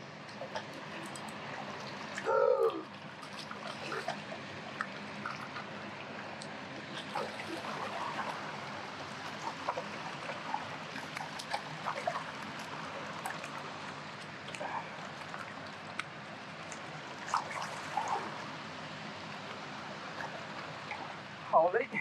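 Moving river water trickling and lapping among shoreline rocks, a steady wash dotted with small clicks and splashes. A short falling cry sounds about two seconds in.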